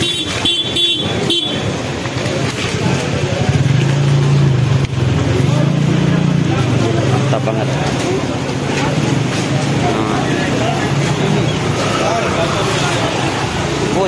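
Busy street bustle: crowd chatter with a motorcycle engine running close by, loudest a few seconds in. A vehicle horn beeps briefly near the start.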